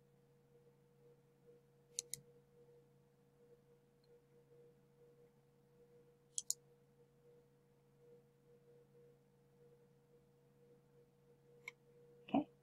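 Near silence with a faint steady hum, broken by a few computer mouse clicks: a quick double click about two seconds in, another about six seconds in, and one faint click near the end.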